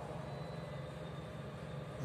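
A steady low hum with a faint hiss over it, constant background noise with nothing starting or stopping.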